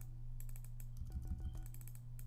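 Computer keyboard keys clicking as a few quiet electric-piano notes sound from Logic Pro X's Classic Electric Piano software instrument, played through Musical Typing at a lowered velocity. The notes are clearest a little after a second in.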